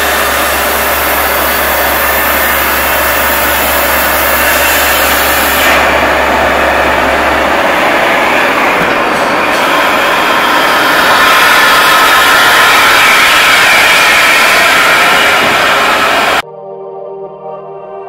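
Vacuhand vacuum tube lifter's blower running, a loud steady rush of air through the suction tube while it holds a cardboard box. About a second and a half before the end it cuts off abruptly and gives way to electronic music.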